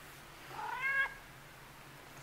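A long-haired orange-and-white house cat giving one short meow, rising slightly in pitch, about half a second in.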